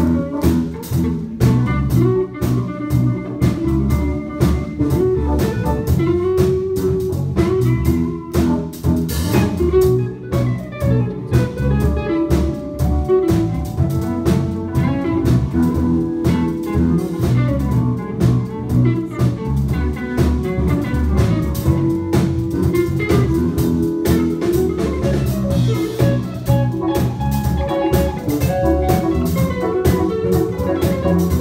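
Live funk band playing: electric guitar lines over electric bass, drum kit and keyboard.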